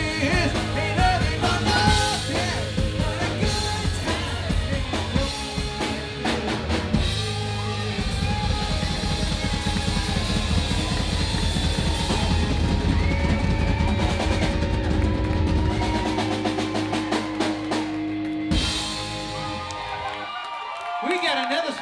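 Live rock band with drum kit, distorted electric guitars and a singer playing the ending of a song: drum rolls and cymbal crashes, then held chords ringing out, and a final hit near the end.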